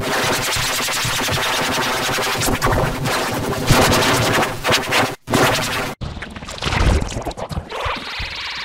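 Heavily distorted, effects-processed music: a dense, harsh wall of sound with scratch-like glitches. It drops out briefly about five seconds in and again at six seconds, then turns choppier.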